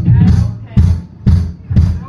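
Live punk rock band playing a song's opening: drums with heavy kick and snare pound a steady beat about two strokes a second, under amplified bass and guitar.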